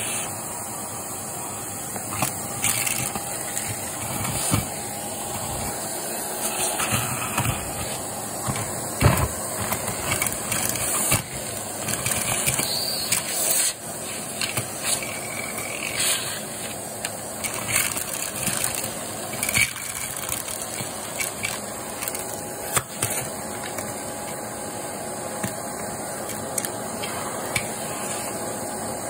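Shark vacuum cleaner motor running steadily, with irregular clicks and rattles as small debris (beads, sequins, glitter) is sucked up.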